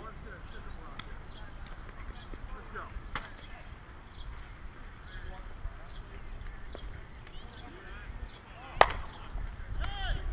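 Softball bat hitting a pitched ball: one sharp crack near the end, the loudest sound here. Voices shout right after it, over faint chatter from the field.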